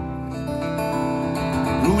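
Acoustic guitar played solo between sung lines of a slow ballad, its chords ringing on with a few plucked notes. A man's singing voice comes back in near the end.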